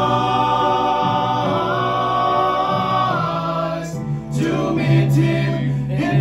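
Five men singing a gospel song in close harmony, holding a long chord for about three seconds before moving to new notes.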